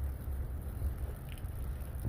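Steady low rumble of outdoor background noise with no distinct event in it.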